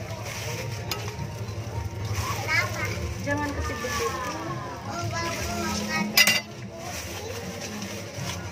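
Utensils scraping and clinking against dishes and pans as food is dished up, with a sharp clack about six seconds in and faint voices behind.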